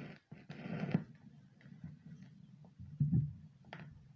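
Turntable tonearm lowered onto a spinning 45 rpm vinyl single: a burst of handling noise ending in a thump as the stylus lands just before a second in, then a steady low hum from the lead-in groove with scattered clicks and another low thump about three seconds in.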